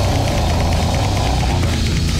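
Deathcore/death metal recording: heavily distorted guitars over rapid, loud drumming with a heavy low end, playing without a break.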